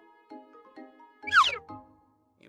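Soft background music, and about one and a half seconds in a single short squawk that falls in pitch: the call of a pet owl answering a request. A low rumble runs under the call.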